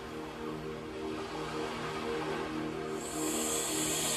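Ambient breathwork music track starting: sustained, steady low chords, with a soft hiss coming in about three seconds in.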